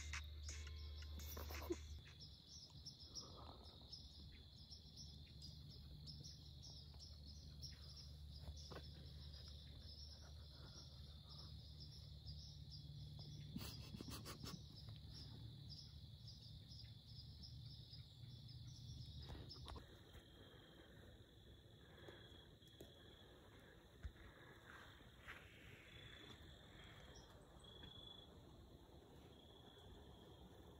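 Faint insect chorus, crickets chirping steadily, over a faint low hum that drops out about twenty seconds in.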